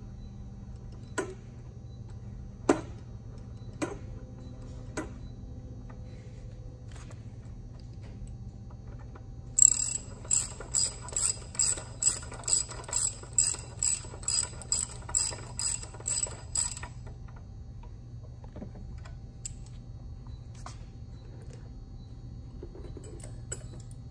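Socket ratchet wrench clicking as it tightens a valve cap on an air compressor pump head. A few single metal clicks come in the first five seconds. About ten seconds in comes a run of some fifteen quick ratchet strokes, about two a second, lasting around seven seconds.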